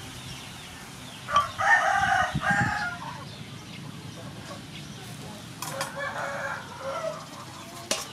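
A rooster crowing once, the loudest sound here, about a second in and lasting about a second and a half. A second, fainter call follows near the end.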